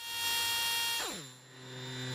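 Electronic synthesizer tone that swells in, then about a second in glides steeply down in pitch and settles into a low steady hum: a sound-design sting leading into the closing music.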